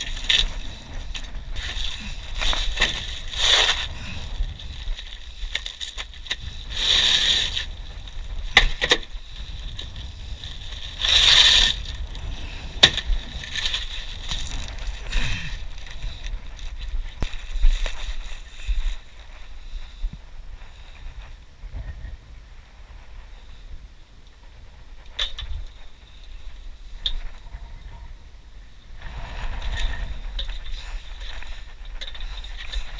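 Rustling, scraping and knocking as roofing materials and tools are handled in a pickup truck bed, with a steady low rumble underneath.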